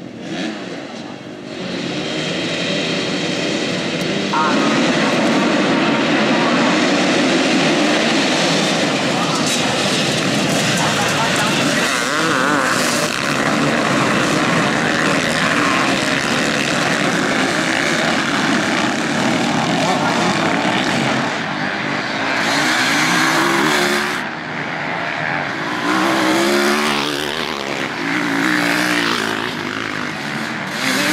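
A full field of motocross bikes revving on the start line, then all accelerating hard off the start about two seconds in. A dense, loud mass of engine noise follows as the pack charges through the first turn, and near the end single bikes can be heard revving up and down as the field strings out.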